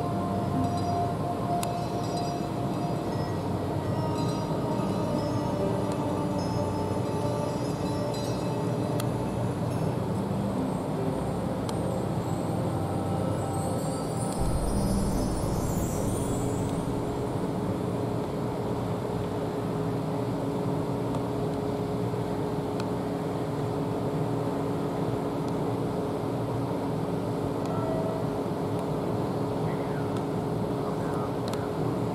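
Steady low mechanical drone with several long-held tones, the running sound of a docked ship's engines and generators, with a brief swell about fifteen seconds in.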